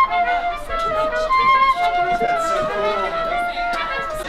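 A small pit orchestra with violin and keyboard playing a melody in held, sustained notes, with a wind instrument carrying part of the line.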